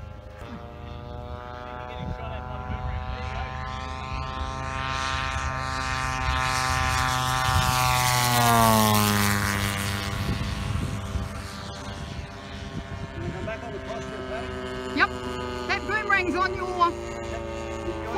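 Propeller-driven radio-controlled model Bearcat making a low fly-by with its smoke system on. The engine note builds to a peak about eight seconds in, then drops in pitch as the plane passes and fades away.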